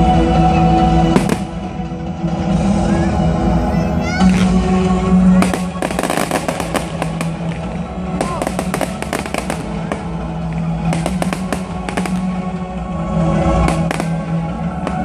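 Fireworks bursting, with one bang about a second in, then a dense run of crackling reports from about five seconds in that thins out near the end, over steady music.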